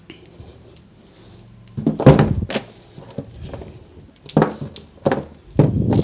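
Handling knocks and thumps of audio gear and cables being moved about. A loud cluster of knocks comes about two seconds in, and several shorter ones come near the end.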